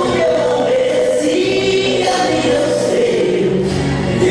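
Male voice singing a gospel song into a microphone, amplified over an instrumental backing with steady low held notes.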